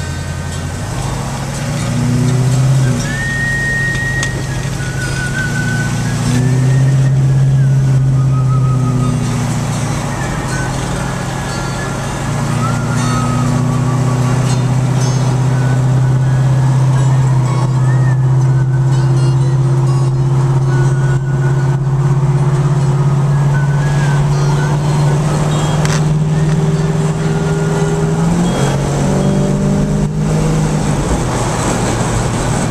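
Dodge Dart GT engine heard from inside the cabin, pulling away from a stop. The engine note climbs and drops back a few times with gear changes in the first dozen seconds, then settles into a steady drone that rises slowly at highway speed, with another change near the end.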